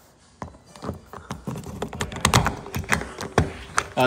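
Irregular clicks and small metal taps of a doorknob lockset being handled and fitted into a door's bored hole, starting about half a second in and coming quicker toward the end.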